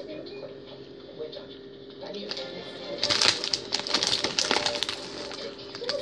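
Plastic candy packet crinkling and rustling as a gummy is picked out, a dense run of crackles through the middle and latter part, over a faint steady hum.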